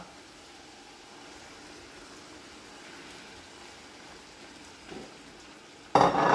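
Faint, steady sizzling of a frying pan of minced meat, onion and peppers cooking on the hob.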